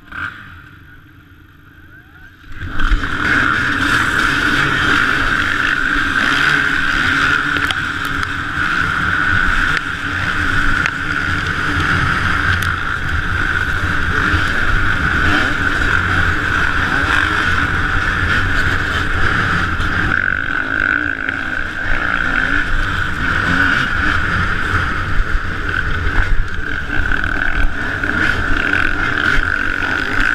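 Dirt bike engines revving hard as a field of riders launches together, starting suddenly about two and a half seconds in. After that comes the close, steady running of one bike ridden at speed across rough ground, over the other bikes around it.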